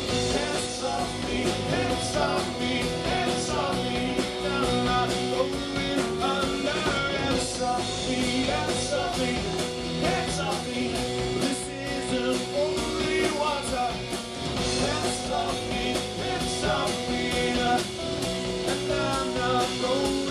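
Live rock band playing with drums, bass guitar, electric guitar and electric keyboard, the drum beat steady throughout.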